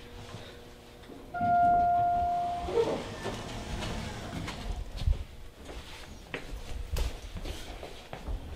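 Otis hydraulic elevator arriving: a single steady electronic chime tone sounds about a second and a half in and holds for just over a second. After it come the doors opening and footsteps, with a few knocks and a low rumble.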